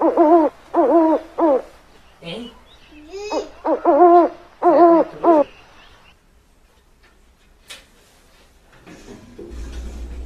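An owl hooting: a quick run of short hoots in the first second and a half, then another run from about three to five and a half seconds in.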